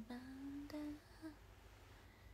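A young woman singing softly, almost humming, holding a low note that rises slightly in pitch and stops about a second in.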